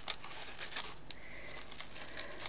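Clear cellophane wrapping crinkling and rustling softly as it is handled while an organza ribbon is tied into a bow, with a few small crackles.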